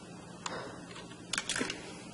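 A few light plastic clicks and taps as an EV3 connector cable is worked through a hole in a LEGO frame: one click about half a second in and a short cluster of clicks around a second and a half.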